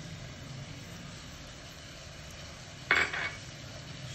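Chicken frying quietly and steadily in ghee in a nonstick wok, with one sharp clink of kitchenware against the pan about three seconds in.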